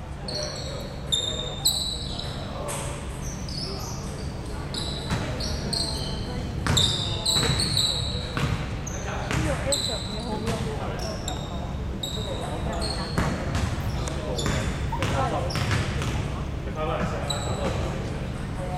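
Basketball shoes squeaking in short high chirps on a sports-hall court floor, with a basketball bouncing now and then. Voices murmur in the reverberant hall.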